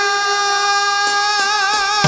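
Live cumbia band music: long held notes with a slight vibrato and no bass or drums under them, a break in the song before the full band with bass and percussion comes back in at the very end.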